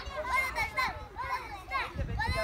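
A group of young children chattering and calling out over one another, their high voices overlapping.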